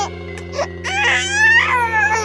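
A baby crying: wavering, falling wails that start about a second in and run loudest near the end, over background music.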